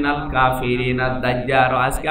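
A man's voice intoning in the sing-song chanted delivery of a Bengali Islamic sermon (waz), drawing out long held pitches rather than speaking plainly.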